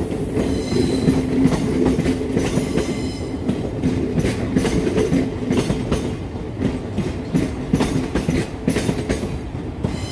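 Thameslink Class 700 electric multiple-unit train rolling slowly through the station, wheels clicking over rail joints and pointwork, with a steady low hum throughout. A faint high squeal comes in around the first second and again around the third.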